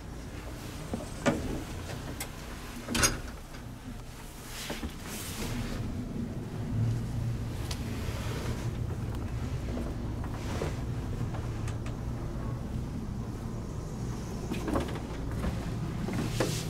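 A 1950s Otis black-button elevator setting off: a few clunks in the first few seconds, then the car running with a steady low hum that grows a little louder from about six seconds in.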